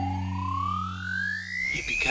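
Electronic dubstep music: a siren-like synthesizer sweep rising steadily in pitch over held bass notes. The bass cuts out about three-quarters of the way through as the sweep keeps climbing.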